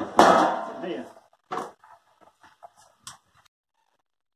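The tail of a spoken phrase, then a few short, light knocks and clicks spaced out over about two seconds, followed by quiet.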